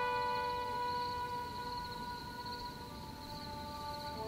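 A long held note on a bowed string instrument, slowly fading, with a faint high wavering tone above it.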